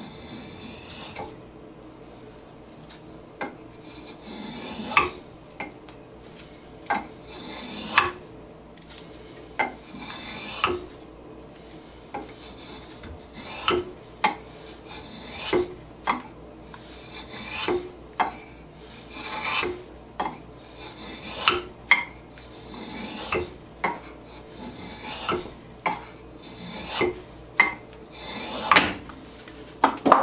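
Stanley No. 151 spokeshave shaving a hickory sledgehammer handle in repeated scraping strokes, about one every second or so, each stroke ending in a sharp click.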